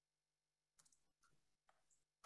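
Near silence, with only a few very faint clicks.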